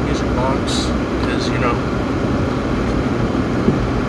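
Steady low rumble inside a Jeep's cabin, with a few short murmured vocal sounds about half a second and a second and a half in.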